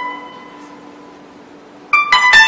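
Guzheng strings left ringing and slowly fading away, then a fresh note plucked sharply near the end.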